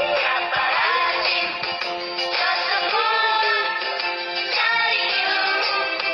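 A children's song: a singing voice holding long notes over backing music.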